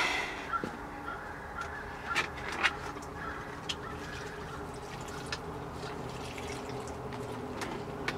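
Water poured onto the soil of a potted plant, with a few light knocks and a faint steady hum underneath.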